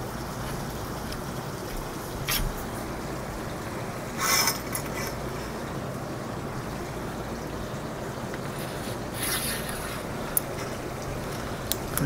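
Steady background noise with a few brief clinks and rattles of metal fittings handled overhead: one about two seconds in, a longer one about four seconds in, another around nine seconds in, and a single sharp click shortly after.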